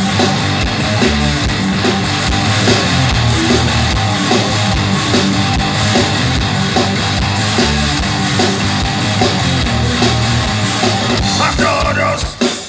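Live heavy rock band playing loud and without vocals: electric guitars over a steady drum-kit beat.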